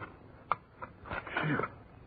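Radio-drama sound effect of a shovel digging against a buried stone, with a sharp click of the blade striking the stone about half a second in. A man gives a short grunt in the second half.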